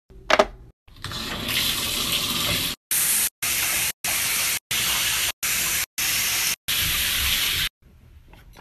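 Shower water running in a steady hiss. From about three seconds in it comes in a string of short, equal bursts with abrupt cuts between them. A brief sharp sound comes just before the water starts.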